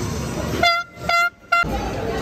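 Three short blasts of a horn, a steady pitched tone, the last one shortest, over arena crowd noise.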